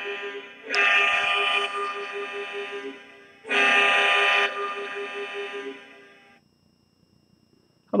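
Desktop hockey goal light's horn sounding over a steady pulsing tone. It gives two loud blasts a few seconds apart, each dying away, and then cuts out about six seconds in. The lamp is lit to celebrate a big card hit.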